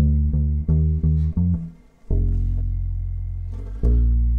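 Electric bass with flatwound strings playing a plucked riff. A quick run of short notes climbs in pitch, then drops to a low F that rings for about two seconds, and a new note is plucked just before the end.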